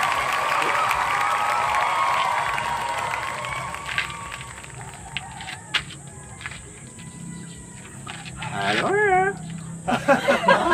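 Several people's voices talking in the background, loud at first and fading after about three seconds. A few sharp clicks follow, and a short wavering vocal call comes about a second before the end.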